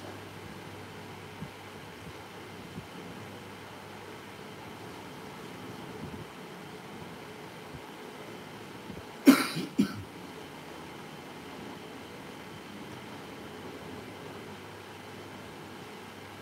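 A person coughing, two or three quick coughs a little past halfway, over a steady low hum of room noise.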